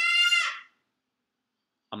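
A single drawn-out, high-pitched cry with an animal-like quality, rising slightly in pitch and ending about half a second in.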